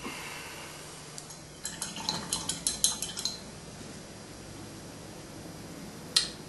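A quick run of about a dozen light clinks, starting about a second and a half in and lasting under two seconds: a paintbrush being rattled and tapped against a glass jar of solvent as it is rinsed between colours. Before it comes a soft, brief rustle.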